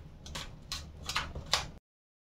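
Steel spoon pressing and smoothing a soft, grainy sweet mixture in a foil-lined tray: four short strokes about every 0.4 s. The sound cuts out suddenly near the end.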